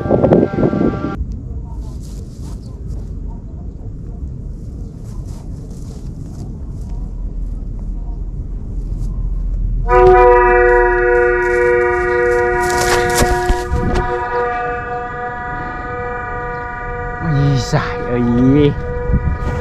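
Wind buffeting the microphone for about ten seconds. Then a set of kite flutes starts sounding in the wind: several steady pitches held together like a long horn chord, with the lowest one dropping out a few seconds later.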